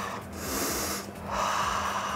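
A man breathing deeply and audibly through an open mouth, one breath in and one breath out, each under a second long: a recovery-breathing exercise to settle the breathing after a workout.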